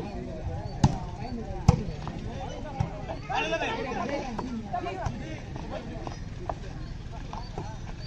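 A volleyball struck by hand twice, about a second apart, with sharp slaps. Players and onlookers shout out over background chatter a little later.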